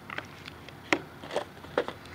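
A few light knocks and taps from a cardboard phone box and its lid being handled on a table, the sharpest about a second in.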